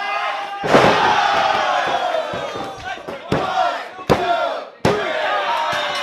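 A heavy thud about half a second in as a wrestler is slammed onto the ring mat, then a crowd of spectators shouting and cheering loudly, with a few more sharp knocks later on.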